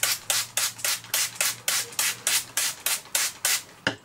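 Trigger spray bottle spritzing water onto paper kitchen towel in quick repeated squirts, about four a second, stopping shortly before the end, followed by a single click.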